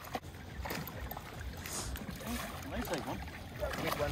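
Water splashing irregularly as a hooked ripsaw catfish thrashes at the surface and is scooped up in a landing net.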